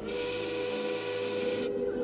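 Soundtrack sound effect: a steady hiss over a held, whistle-like tone of several pitches, cutting off suddenly near the end.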